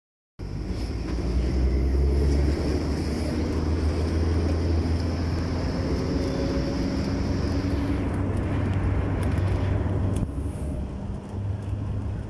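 Engine and road noise of a moving vehicle heard from on board: a steady low drone with tyre hiss, easing off briefly about ten seconds in.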